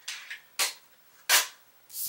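Heavy kraft cardstock being handled and folded by hand on a cutting mat: two short, sharp paper rustles about a second apart.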